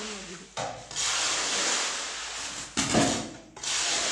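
A hoe scraping and dragging through a pile of stone chips on a concrete floor, mixing the aggregate for concrete paver tiles by hand. Repeated long, gritty scraping strokes, with a heavier knock about three seconds in as the blade strikes the floor.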